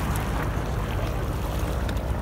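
Wind buffeting the microphone: a steady low rumble with no break.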